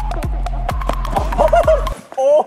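Electronic dance music with a deep kick drum about twice a second, cutting off suddenly near the end. A voice comes in over it in the last second.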